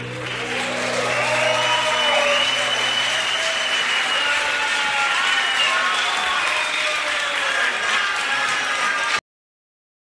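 Live concert audience applauding and cheering as the band's last chord dies away in the first couple of seconds. The sound cuts off abruptly near the end.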